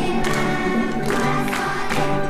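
Children's choir singing a song in unison with instrumental accompaniment, sustained sung notes broken by syllables.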